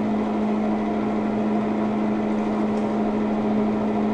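A steady, unchanging hum with a strong low tone and fainter overtones, like a fan or small motor running.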